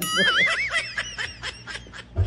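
A person laughing: a high, wavering squeal at first, trailing off into short, weakening breathy pulses.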